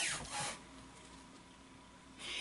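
A brief soft rub of tarot cards being handled on a cloth-covered table, about half a second in, then faint room tone.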